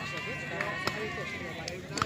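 Voices of players and spectators calling out at a softball field, several at once, with one long drawn-out high call. A few short sharp clicks are heard about a second in and again near the end.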